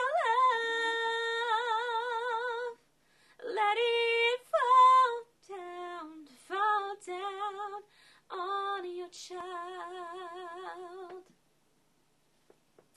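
Young woman singing a cappella, the chorus of a slow worship song: several phrases of long held notes with vibrato, separated by short breaths, stopping about a second before the end.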